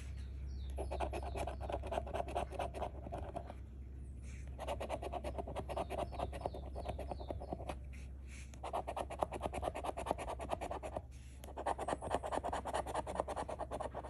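A coin scratching the coating off the bonus spots of a scratch-off lottery ticket: four runs of quick, rapid strokes, one per spot, with short pauses between them.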